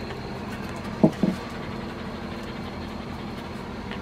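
A steady low background hum with faint steady tones, like a machine running, and a short low two-part sound about a second in.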